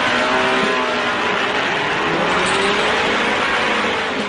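A motor vehicle's engine running steadily, its pitch rising and falling gently, over a continuous rush of noise.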